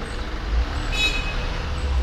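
Street background noise: a steady low rumble of traffic, with a brief high-pitched squeal about a second in.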